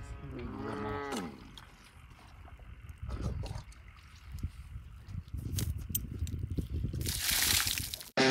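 A cow moos once, a drawn-out falling call lasting about a second, at the start. After it come low rumbling and scattered clicks, and near the end about a second of loud hiss.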